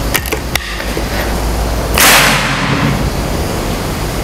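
A few light clicks of the bolt being worked on a Moser PCP air rifle, then about halfway through a single loud, sharp report as it fires a pellet, fading within half a second.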